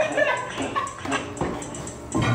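Short, high-pitched vocal yelps and whoops from a group of people, rising and falling in pitch.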